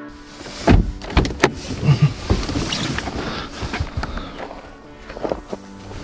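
Handling noise from a camera held against a winter jacket: a run of irregular thumps and knocks in the first couple of seconds, then fabric rustling with scattered softer knocks.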